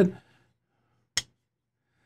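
A single sharp click about a second in from handling the closed Kizer Beyond titanium framelock folding knife, with silence on either side.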